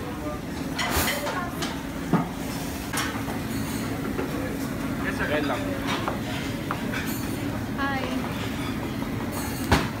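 Busy buffet restaurant ambience: many voices chattering over a steady hum, with clinks and knocks of dishes and cutlery, the sharpest about two seconds in and near the end.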